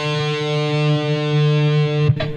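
Distorted electric guitar sounding one steady note on the A string, the fifth-fret D, in a guitar tuned about 30 cents above concert pitch.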